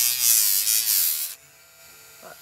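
Cordless Dremel rotary tool with an 80-grit sandpaper wheel grinding down the edge of a cured epoxy resin piece: a high motor whine with a rasping scrape, its pitch wavering as the wheel bears on the resin. It stops suddenly just over a second in.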